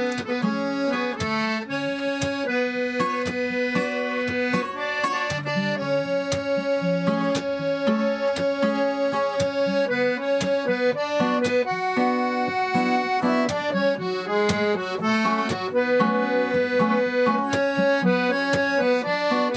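An acoustic guitar strummed in a steady rhythm under a melody of long, held notes, playing an instrumental passage with no singing.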